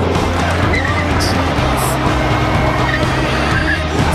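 Music soundtrack with a car underneath it: a rear-wheel-drive Volvo 760 GLE driven hard on gravel, its tyres skidding.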